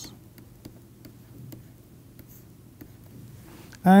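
Faint, scattered clicks and taps of a stylus on a pen tablet as a short line of notation is written.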